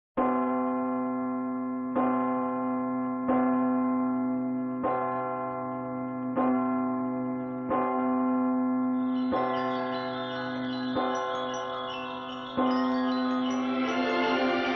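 A large church bell tolling, struck about every second and a half, nine times, each stroke at the same pitch and ringing on until the next. Higher ringing sounds join in over the last few seconds.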